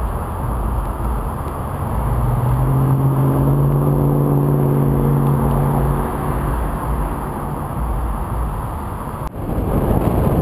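Car traffic at a busy intersection: a steady low rumble of engines, with one engine humming at a steady pitch for a few seconds in the middle. The sound breaks off abruptly near the end and a rougher rush starts.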